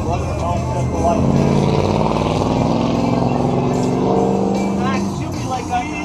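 A car engine running close by, growing louder about a second in and easing off near the end, with voices and music behind it.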